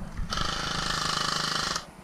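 An electric airsoft rifle firing one rapid full-auto burst of about a second and a half, its gearbox cycling in an even fast chatter that stops just before the end.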